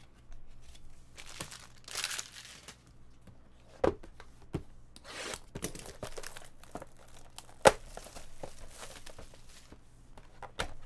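Clear plastic shrink wrap being torn and crinkled off a trading-card hobby box, in several rustling bursts. Sharp taps of the box being handled come through, the loudest about three-quarters of the way through.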